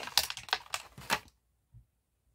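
A quick run of small plastic clicks and taps as toy packaging is handled and a small plastic pet figure is pulled free of a doll box. The clicks stop after just over a second, and one faint low thump follows.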